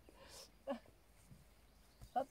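Near silence, with faint rustling and one brief soft sound about two-thirds of a second in.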